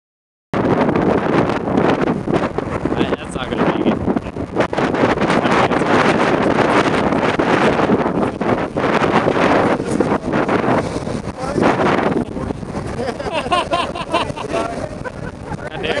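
Heavy wind buffeting the microphone, with the engine of an SUV driving through mud in the distance under it. The wind eases after about twelve seconds, and a person laughs near the end.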